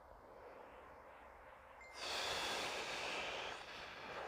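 A man smoking a cigarette: a faint drawn-in breath, then the smoke blown out in one long breathy exhale starting about halfway in and lasting about a second and a half.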